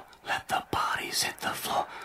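Quiet, breathy speech close to a whisper: a person talking softly in short phrases.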